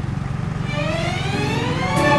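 Small motorcycle engine accelerating, its pitch rising steadily through the last second and a half.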